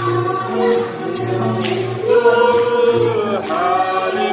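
Several women singing a Nepali Christian worship song together, with a tambourine keeping a steady beat of about three to four strokes a second and a hand drum and acoustic guitar accompanying.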